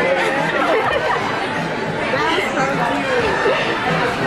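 Indistinct chatter of several people talking at once, overlapping voices in a busy restaurant dining room.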